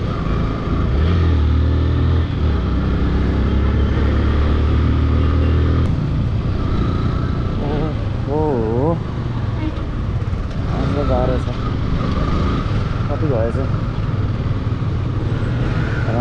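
Motorcycle engine running while riding in city traffic. It holds a steady low note for the first several seconds, then eases off about six seconds in. A few short warbling tones come through later.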